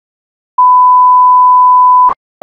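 A loud, steady 1 kHz sine test tone starts about half a second in and holds at one pitch. It is the reference tone that plays with SMPTE colour bars.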